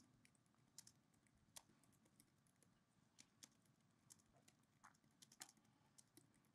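Faint, irregular keystrokes on a computer keyboard as a sentence is typed.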